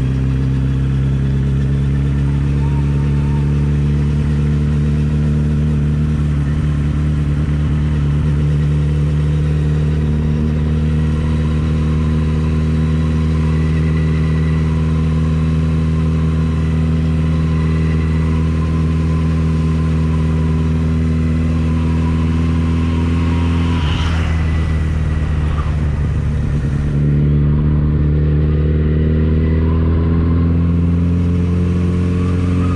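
Motorcycle engine running steadily at cruising speed, heard from the rider's seat. About 24 seconds in the note breaks briefly, then from about 27 seconds it rises and gets louder as the bike accelerates.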